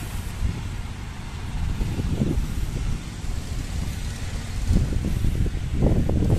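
Road traffic on a nearby road: a low, uneven rumble with a couple of louder swells, one midway and one near the end.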